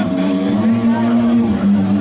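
Live rock band playing loudly, sustained electric guitar and bass notes held and changing to a new note about one and a half seconds in.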